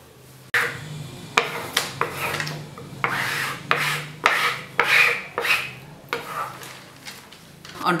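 Irregular rubbing and scraping strokes of hands working a cloth covering pasted onto a plywood board, starting abruptly about half a second in.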